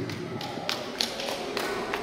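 A handheld microphone being set down and handled on a lectern: a run of about half a dozen light taps and clicks, uneven in spacing.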